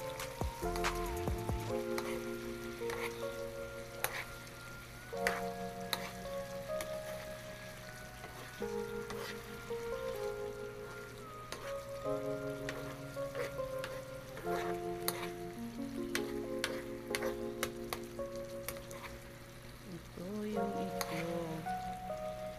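Chicken stew in a wok sizzling as it cooks, with scattered sharp clicks from a spoon stirring. Background music of sustained chords, changing every second or two, plays over it.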